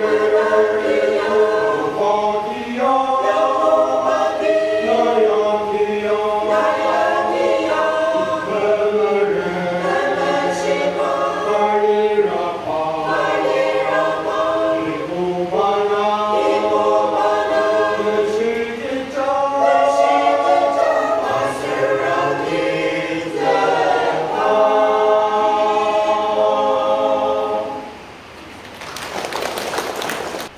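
Mixed choir of men and women singing, the sung phrases rising and falling in pitch. The singing stops shortly before the end, and a brief rushing noise follows.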